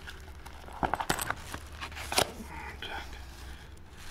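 Handling of a laptop bag: a few sharp clicks and clinks from the metal clip of its carry handle being fastened, about one second in and again about two seconds in, with soft rustling of the bag.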